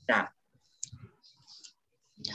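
A brief spoken syllable, then a few faint computer mouse clicks and light scratchy noises while annotations are drawn on screen.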